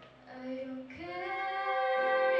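Female lead vocalist singing, live with an orchestra. The instruments fade out at the start, then her voice holds a low note, and about a second in it moves to a higher held note over faint accompaniment.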